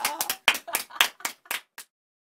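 Brief applause from a couple of people: quick, irregular hand claps that thin out and stop near the end.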